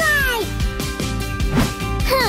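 A cartoon kitten's meow, falling in pitch and ending about half a second in, over background music.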